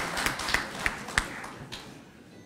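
Audience applause dying away, thinning to a few scattered last claps before it stops.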